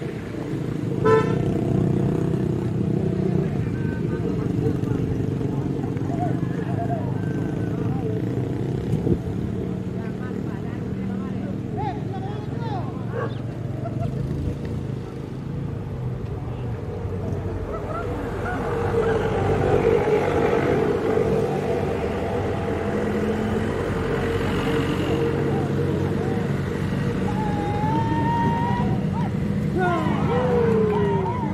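Onlookers' voices over motor vehicle noise, with motorcycles running and horn toots from the road.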